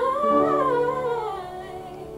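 A woman singing a long wordless line that glides up and down, fading out near the end, over held piano chords.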